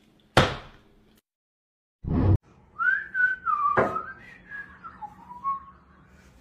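A sharp smack about half a second in, then after a short gap a heavy thump, followed by a person whistling a wavering, gliding tune, with a sharp knock partway through.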